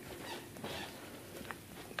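Faint rustling from a handheld phone being moved while its holder walks on carpet, with one small click about one and a half seconds in.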